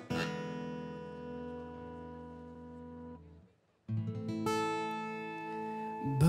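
Acoustic guitar: a chord strummed once and left to ring for about three seconds until it dies away. After a brief silence a second chord is struck, with a few more notes added on top about half a second later.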